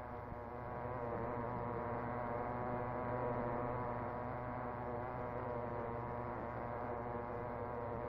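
Tiny model-car engine running at a steady speed under load on a homemade dynamometer, a continuous even buzz.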